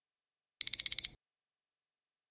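Countdown timer alarm sound effect: four rapid high-pitched beeps in about half a second, signalling that the quiz time has run out.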